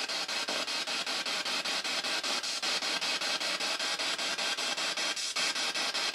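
Spirit box sweeping through radio frequencies: a steady hiss of static chopped about six times a second.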